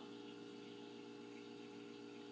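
Near silence: room tone, a faint steady hum with hiss.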